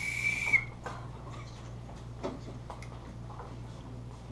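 A child blowing a small whistle: one steady high note with breathy air around it, which stops about half a second in. After it, only quiet room sound with a low hum.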